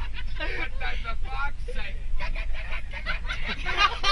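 Several young passengers talking and calling out over one another inside a coach bus, with a loud shrill shout near the end. Underneath runs the steady low rumble of the moving bus.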